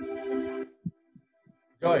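A sung note over a video call, held for under a second and then ending, followed by three or four soft low thumps spaced apart.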